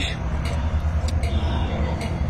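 Wind buffeting an outdoor microphone: a steady low rumble that rises and falls, with a few faint clicks.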